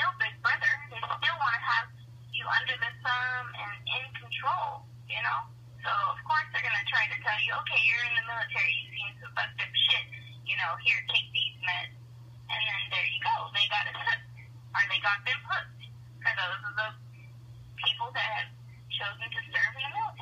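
A person talking steadily over a telephone line, the voice thin and narrow-sounding, with a steady low hum underneath.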